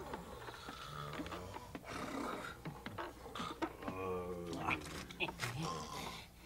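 A cartoon animal character's wordless vocal cries, with one drawn-out falling call about four seconds in, among a few short knocks.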